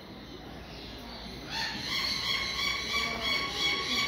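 A bird calling: a loud, pulsing run of high notes starts about one and a half seconds in and keeps going, over faint background noise before it.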